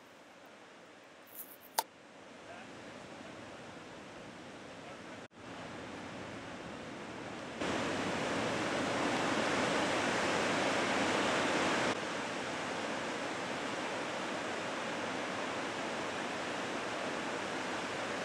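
Steady rushing noise of ocean surf, even and without distinct wave breaks, coming up in steps: louder from about eight seconds in, then a little softer from about twelve seconds. A single sharp click sounds just before two seconds in.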